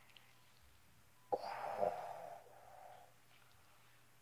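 A person's sudden breathy exhale about a second in, trailing off over a second and a half; otherwise near silence.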